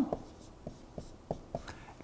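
Marker pen writing on a whiteboard: a handful of short, faint strokes.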